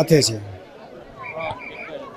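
A man's voice finishes a word, drawn out low, in the first half-second. Then come faint voices of a crowd talking in the background.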